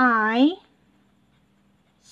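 Faint strokes of a felt-tip marker writing on a paper workbook page, after a single spoken word at the start.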